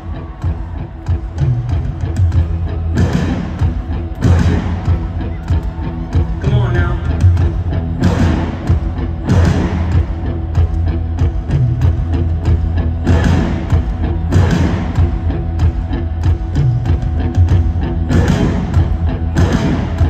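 Live rock band performing in an arena: a drum kit and guitar over a steady heavy bass, with loud drum-and-cymbal accents landing in pairs about every five seconds.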